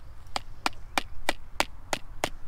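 Hammer blows driving a metal banner ground stake into a grass bank: six sharp, evenly spaced strikes, about three a second.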